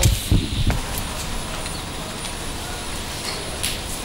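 Steady outdoor background noise, a low rumble with hiss, with a few brief low thumps in the first second.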